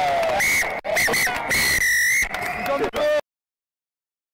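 Rugby referee's whistle: three short blasts, then one long blast, the final whistle ending the match. Players' shouts are heard around it. The sound cuts off suddenly about three seconds in.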